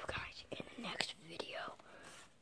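A boy whispering close to the microphone.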